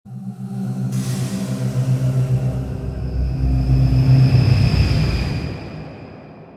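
Channel logo intro music sting: a held chord with a whoosh coming in about a second in and a deep low rumble swelling through the middle, then fading out near the end.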